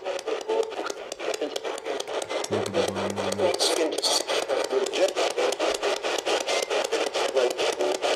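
P-SB11 spirit box sweeping through radio stations: a rapid, even chop of static and clipped radio fragments, several a second. A short low hum-like radio fragment comes through about two and a half seconds in and lasts about a second.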